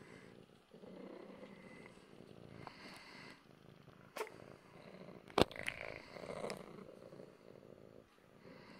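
Long-haired cat purring close to the microphone, a steady low rumble. A few sharp clicks or taps break in over it, the loudest a little past halfway.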